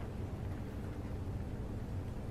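Steady low rumble of background room noise, with no distinct sound standing out.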